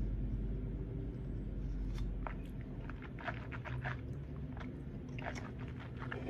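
A person sipping a juice drink from a plastic cup and swallowing, then a scattering of small wet mouth clicks and lip smacks as he tastes it.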